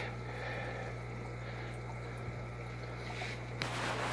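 Steady low electrical hum under a soft, even watery hiss from the running aquarium setup and the gravel-vac siphon. A short rustle of handling comes near the end.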